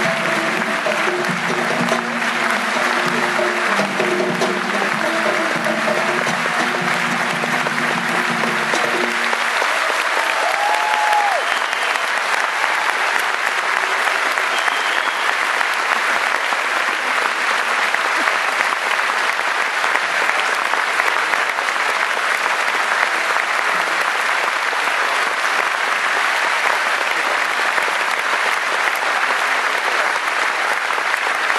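Audience applauding steadily throughout. A live folk band plays under the applause for about the first nine seconds and then stops, leaving the applause alone.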